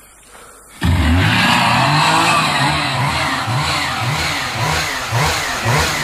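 Chainsaw engines bursting into loud running about a second in, then revved up and down over and over.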